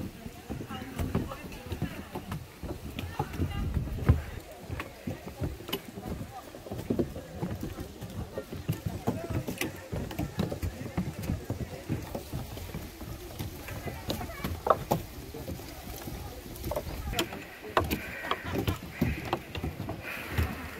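Footsteps climbing wooden stair treads, with scattered knocks and a steady low rumble on a handheld microphone. Voices of people nearby are heard, most clearly near the end.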